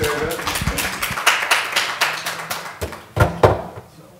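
Scattered audience applause, thinning out toward the end, with two louder thumps a little after three seconds in.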